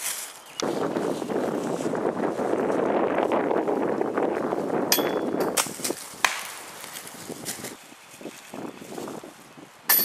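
Footsteps through deep dry leaf litter: a dense, steady crunching and rustling for about five seconds, then lighter, scattered steps with a few sharp knocks.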